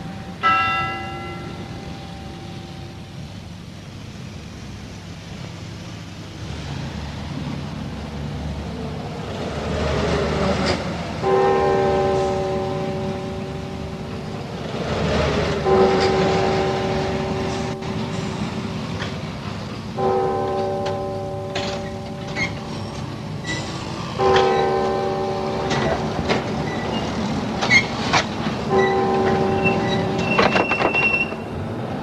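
A tower-clock bell strikes about half a second in and rings away over street traffic. Later come long, held chords of several notes that start about every four seconds, each lasting three or four seconds, with scattered clicks among them.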